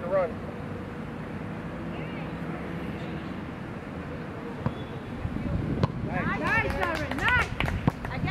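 Steady wind and outdoor background noise, then from about six seconds in young children's high voices shouting and calling, preceded by a sharp knock.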